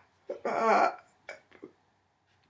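A woman's wordless, throaty vocal sound: a loud drawn-out "aah" from about a third of a second to one second in, followed by a few short, softer vocal sounds.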